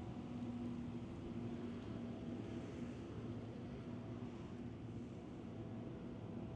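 Steady low drone of combine harvesters working in the distance, a few held engine tones over a light rushing haze.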